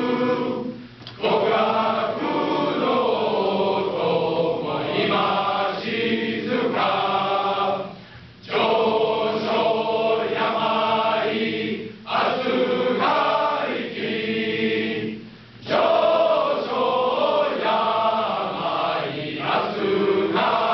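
Large men's choir singing together in long sustained phrases, broken by four short pauses between phrases.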